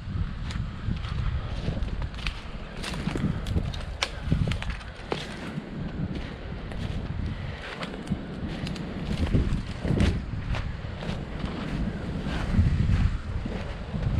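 Footsteps through snow and dry leaf litter, irregular steps, over wind rumbling on the microphone.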